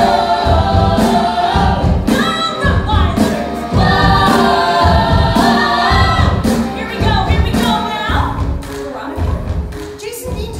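Musical theatre cast singing together in chorus over a band with a steady drum beat. The full chorus breaks off about eight and a half seconds in and the music carries on more thinly.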